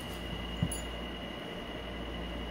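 A puppy playing with an ice cube on a vinyl floor: one brief knock a little over half a second in, over a steady room hum with a faint high whine.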